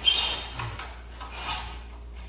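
Hand saw cutting a 45-degree miter through non-wood shoe molding held in a plastic miter box: about three back-and-forth rasping strokes, the first the loudest.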